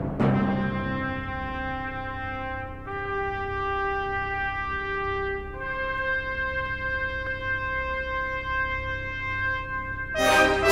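Orchestral brass music: long held chords that change about three seconds in and again a little past halfway.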